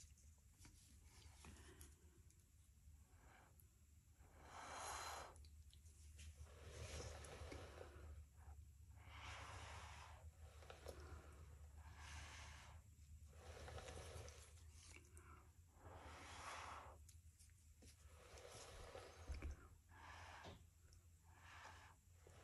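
Faint, repeated puffs of breath blown through a jumbo paper straw to push wet acrylic paint out into a small bloom, a dozen or so short blows with pauses between them.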